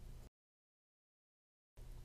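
Near silence: a dead-silent gap between two spoken words of narration, with no room tone.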